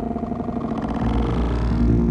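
Cello bowed with the sensor-extended "Fello" bow and sent through live electronic processing: a loud, deep low drone under layered bowed tones that grow brighter and louder toward the end.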